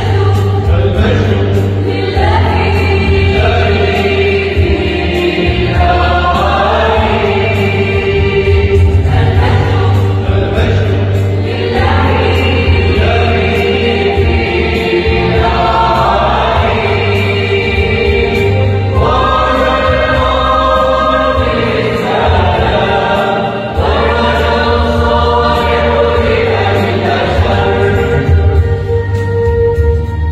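Mixed choir of women and men singing a Christmas hymn, the sung phrases changing every second or two over a steady low accompaniment.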